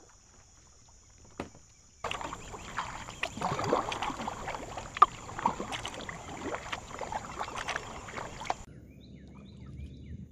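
Kayak paddling close up: the blades dipping, splashing and dripping, with water gurgling against the hull, starting suddenly about two seconds in and stopping suddenly shortly before the end. One sharper splash stands out about halfway through.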